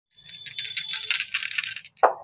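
Small plastic-capped poster-paint jars clinking and rattling together in the hands: a quick run of light clicks.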